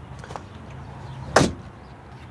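A single sharp knock about one and a half seconds in, over a low steady hum inside a vehicle cabin.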